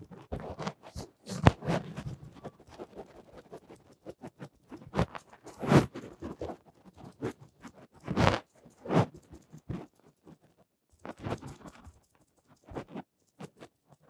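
A piece of sponge dabbed repeatedly against a stretched canvas while pouncing on acrylic paint: irregular soft pats and taps, with a few louder knocks about a second and a half, six and eight seconds in.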